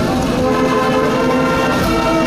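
Brass marching band playing long held chords on trumpets, trombones, saxophones and tubas.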